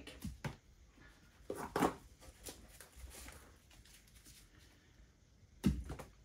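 Quiet handling of a canvas on a paint spinner, a few faint knocks, then a single sudden louder sound shortly before the end as the canvas is flicked into a spin.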